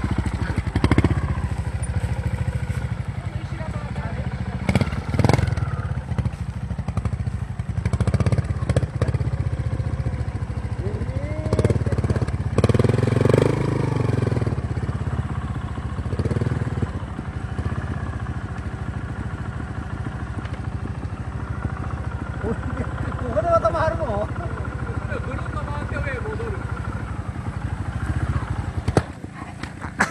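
A Vertigo 125 cc two-stroke trials motorcycle running at low revs with a few sharp throttle blips as it is ridden through slow, tight turns. Near the end the engine stops as the bike goes over on its side and stalls.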